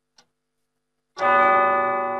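A faint clock tick, then about a second in a loud bell-like chime that rings on and slowly fades: the opening sting of a TV news programme's title sequence.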